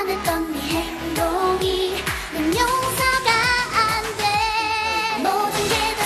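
Upbeat Korean pop song: a woman singing over a backing track with a steady kick-drum beat, and a long wavering held note in the middle.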